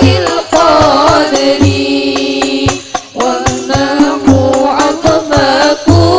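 A female voice sings a melismatic sholawat melody to a rebana ensemble. Frame drums play frequent sharp slaps, with a deep bass drum stroke roughly every two seconds.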